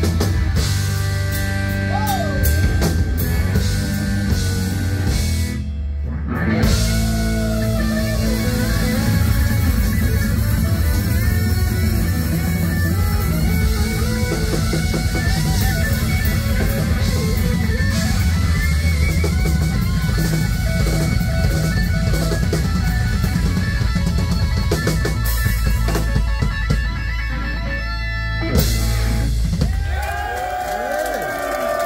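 Live blues-rock band playing an instrumental passage: electric guitars over bass guitar and drum kit, with bent lead-guitar notes, a short break in the cymbals and guitars near six seconds, and a loud accent near the end.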